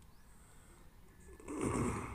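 A man's sharp sniff, a breath drawn in through the nose close to the microphone, loud and about half a second long near the end; before it only a faint low hum from the sound system.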